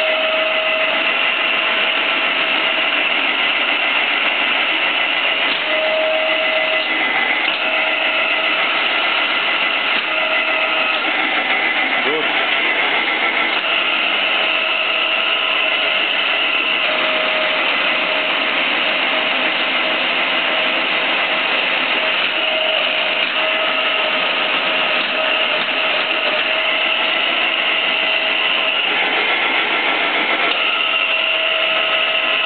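Stanko 6R12 vertical milling machine running on its first test run after an overhaul with new bearings, a steady mechanical running noise from the spindle and gearbox. Gear whine in several pitches keeps fading in and out over the noise.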